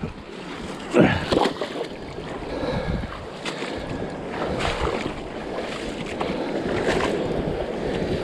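Water sloshing and splashing in a shallow rock pool as a hand feels around under a boulder, with a few sharp splashes, the loudest about a second in.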